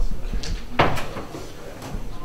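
A few short knocks and rustles as a book and papers are handled on a wooden podium, the loudest knock about a second in.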